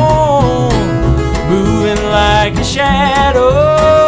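Acoustic country band playing: upright bass and two acoustic guitars, with a held vocal note that falls away just after the start and another that swells in near the end.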